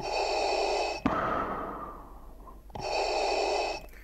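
Darth Vader's respirator breathing sound effect playing back: a hiss with a steady whistle-like tone for about a second, a longer hiss that slowly fades, then the tone-laden hiss again. It cuts off just before the end.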